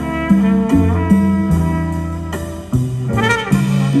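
Live Latin jazz band playing an instrumental passage: sustained bass notes and chords, with a trumpet melody line coming in about three seconds in.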